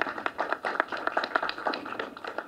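Light, scattered hand clapping from a few people, irregular and brief.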